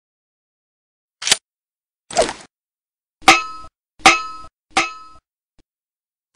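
Five sudden metallic clanging hits about a second apart. The last three are the loudest and ring briefly after each strike. These are produced sound effects over a title card, not a real object at work.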